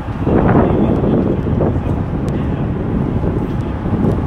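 Wind buffeting the microphone in an uneven rumble, over the low running sound of a slow-moving SUV.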